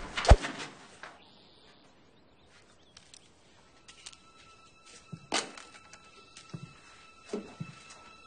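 Film soundtrack: the tail of a loud crash with a bang just after the start, then near quiet. From about four seconds in, a faint high sustained tone holds, with a sharp knock just after five seconds and a few soft thuds.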